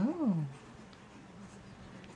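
A short wordless voice sound at the very start, about half a second long, its pitch rising and then falling, followed by quiet room tone.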